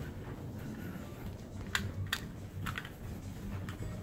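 Footsteps climbing a carpeted staircase: a low steady rumble with a few short, sharp clicks in the second half.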